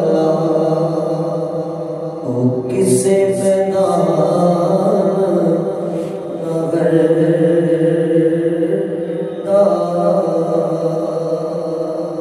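A man chanting an Islamic devotional poem into a microphone, in long, held melodic notes that rise and fall slowly.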